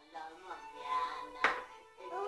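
A young child's drawn-out fussing voice, a long wavering cry-like sound that swells and fades, with a sharp click about one and a half seconds in.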